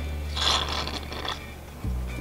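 A plastic meat flavor injector working in a cup of liquid, making a short scratchy noise lasting about a second, over background music with a steady low bass.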